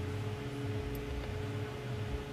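Steady background hum with a thin constant tone and a hiss, in a parked car's cabin with the engine off.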